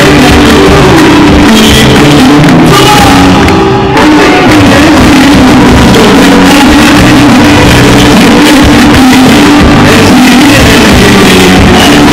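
Loud live pop music from a band and a male singer on a microphone, with the crowd joining in; the sound dips for a moment about four seconds in.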